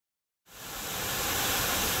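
Steady rushing of a waterfall pouring down a rock face, fading in from silence about half a second in and holding level.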